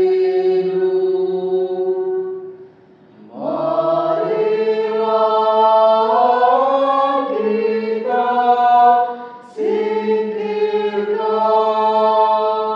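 A choir chanting in long held notes, several voices together, in phrases with a short pause about three seconds in and another just before ten seconds.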